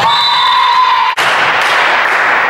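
Indoor volleyball play in a reverberant sports hall: a steady high squeal, typical of court shoes squeaking on the hardwood floor, over sharp echoing ball and floor impacts. The sound cuts off suddenly about a second in, and the hall noise of the next rally follows.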